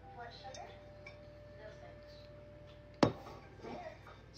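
A wire whisk knocks sharply against a saucepan about three seconds in, ringing briefly, followed by lighter clinks and scraping of the whisk inside the pan as the last of the gravy is scraped out.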